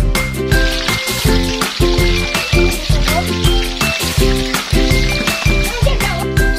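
Hot cooking oil sizzling in a wok, starting about half a second in and dying down near the end, under upbeat background music with a steady beat.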